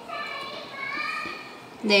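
A child's voice in the background: one drawn-out, high-pitched vocal sound of about a second and a half. The teacher's voice comes back in near the end.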